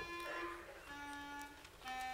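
A solo clarinet plays slow, held notes with short gaps between them, stepping down in pitch over three notes.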